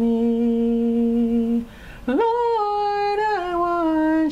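A woman humming a slow spiritual melody unaccompanied: one long low note held for about a second and a half, a short break for breath, then a higher note that steps down in pitch.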